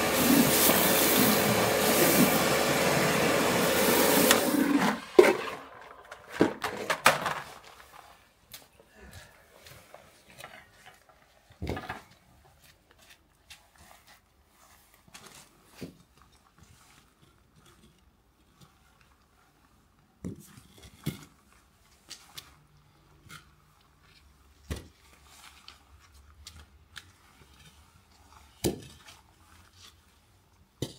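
Electric pressure washer running loudly, a steady tone over a hiss, for the first four and a half seconds, then cutting off abruptly. After it, scattered short knocks and scrapes of terracotta plant pots being shifted on wet paving slabs.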